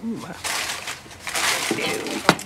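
Rustling and scraping of things being handled on a shop counter, in two short stretches, after a brief word at the start.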